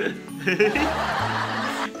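Two people laughing over background music with a steady bass line.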